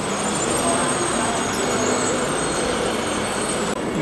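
Steady background noise of a large indoor exhibit hall: a continuous even hiss with faint voices in the distance.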